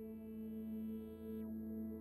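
Ambient music made of long, held tones.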